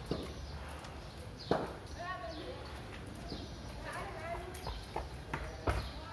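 Hard knocks of a cricket ball at practice: one sharp knock about a second and a half in and more close together near the end. A voice calls out twice in between.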